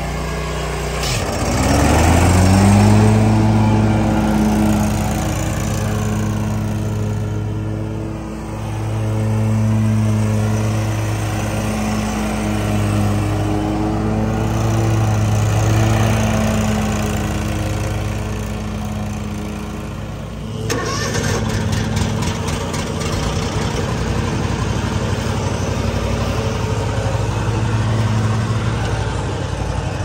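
Exmark commercial mower engines. One engine revs up within the first two seconds, then runs steadily at high throttle while mowing, its pitch wavering slightly. About 20 seconds in, the sound switches abruptly to a closer, rougher engine with rattling.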